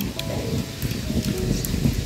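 Basmati rice boiling over a wood fire in a cast-iron pot at a medium, not rolling, boil: a steady bubbling hiss.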